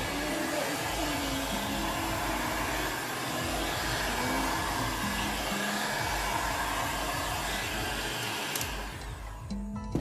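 Hand-held hair dryer blowing steadily at close range over wet acrylic paint on a paint-pour canvas, spreading the paint. It cuts off near the end.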